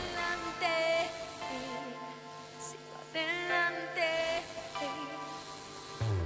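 Live pop music: a female lead vocal sings short phrases over sustained keyboard chords, with no drums or bass in this quiet passage.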